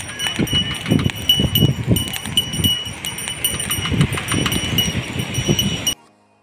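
Air blower fanning the charcoal fire of a roadside corn-roasting cart: rumbling gusts of air with a high squeak repeating about three times a second.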